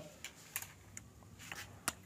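Dry-erase marker writing on a whiteboard: a few faint, short scratching strokes and clicks, the sharpest just before the end.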